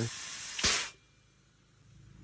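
Compressed air hissing out of a BeadBlaster bead-seating tank into a tire, with one louder burst about two-thirds of a second in, then cutting off suddenly just under a second in.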